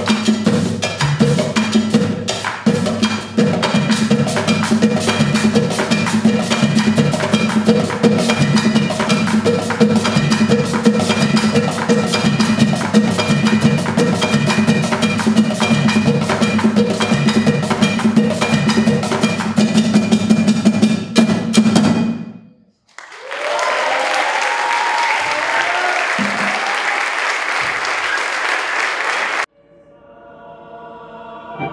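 Hand-percussion ensemble of djembes and cajóns playing a dense, fast rhythm that stops abruptly about two-thirds of the way in, followed by audience applause that cuts off just before the end.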